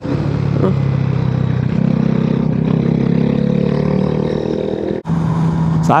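Motorcycle engine running under way on a winding road, its note stepping up about two seconds in and then rising slowly as the bike accelerates, with wind noise around it. There is a brief break near the end.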